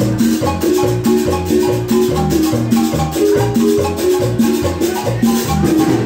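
Live Latin dance band playing an upbeat tune led by a marimba struck by two players, with congas, drum kit, saxophones and electric bass keeping a steady, dense rhythm.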